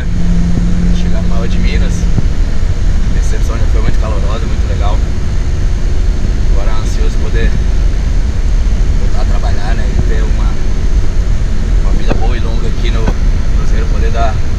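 Loud, steady low rumble of a coach's engine and road noise heard inside the cabin, with a man's voice talking faintly under it at intervals.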